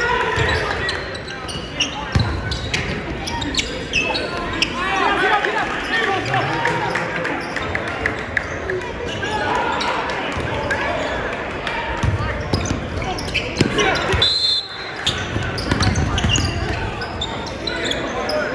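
Basketball being dribbled on a hardwood gym floor, a run of sharp bounces, under the echoing chatter and shouts of a crowd in a gymnasium.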